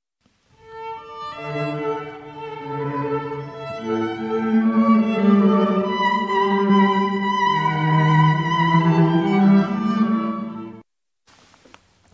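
Instrumental music: a melodic passage of held notes that swells in about half a second in and stops abruptly about a second before the end.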